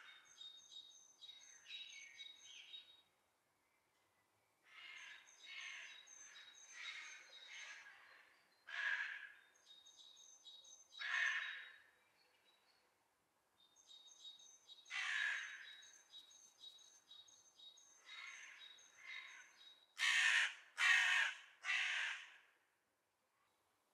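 Crows cawing: runs of harsh, repeated caws with short pauses between the runs, the three loudest caws coming near the end. Thin, high, rapidly repeated bird chirps sound along with several of the runs.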